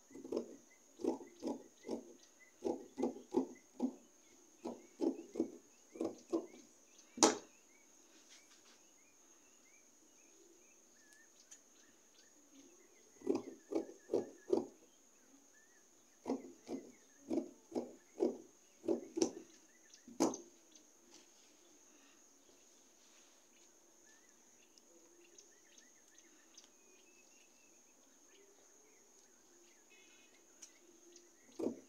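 Scissors cutting through stiff hard net in two runs of quick snips, about two to three a second, with a pause in between; each run ends in a sharper click. A faint steady high-pitched tone runs underneath.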